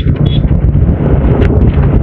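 Wind buffeting a moving camera's microphone, a loud steady low rumble.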